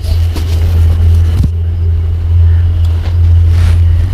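A loud, steady low-pitched hum or rumble with faint scattered clicks over it.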